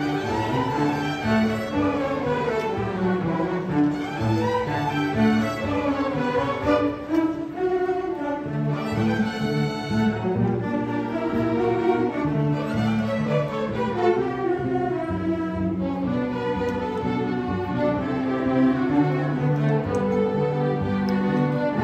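A high school string orchestra of violins, cellos and double basses playing continuously, its bowed lines moving up and down in pitch.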